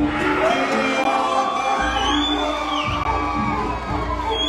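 Walkout music playing over a cheering crowd, with one high, drawn-out shout about two seconds in.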